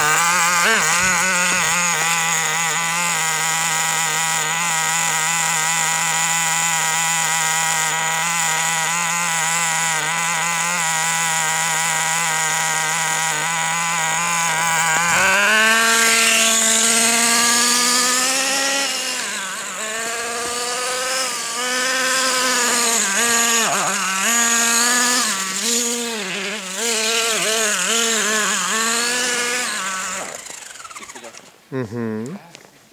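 Traxxas T-Maxx's small two-stroke nitro engine running at a steady high note for about fifteen seconds, then revving up and down as the truck is driven.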